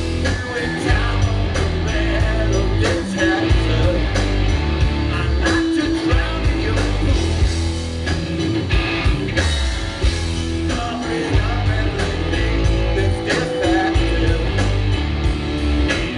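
Live rock band playing at full volume: distorted electric guitars through Marshall amplifiers, bass and a drum kit, heard through a concert PA.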